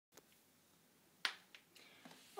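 Quiet room tone broken by one sharp click about a second in, with two fainter ticks around it.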